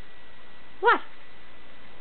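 English springer spaniel giving one short, high-pitched vocal 'talking' sound about a second in, rising then falling in pitch.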